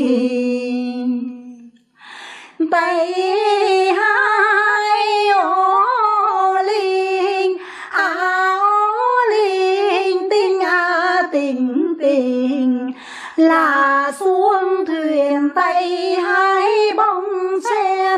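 Unaccompanied female Quan họ folk singing from northern Vietnam: a long held note, a short break for breath, then a slow melody full of wavering, gliding ornaments, with another brief breath near the end.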